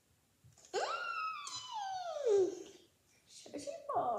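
A boy's voice making a long wordless call that rises sharply and then slides down in pitch for about two seconds, followed near the end by a shorter vocal sound.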